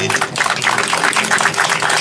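Crowd applauding, a dense patter of many hands clapping.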